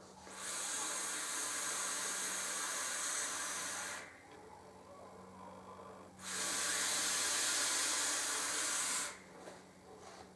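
A long direct-lung draw on an e-cigarette mechanical mod fitted with a 0.3-ohm sleeper coil build: a steady airy hiss of air pulled through the atomizer for about three and a half seconds. After a two-second pause comes a steady exhale of about three seconds as the vapour cloud is blown out.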